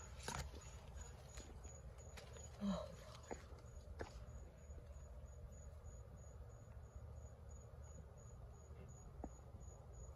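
Faint outdoor garden ambience: an insect chirping high and steady about twice a second over a low rumble, with a few light clicks from leaves being brushed and a brief louder sound about three seconds in.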